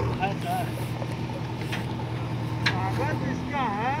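Diesel engine of a JCB backhoe loader running steadily with a low, even hum, while people talk in the background.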